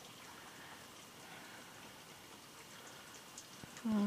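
Faint quiet-room background with light, irregular dripping of melting snow outside a window.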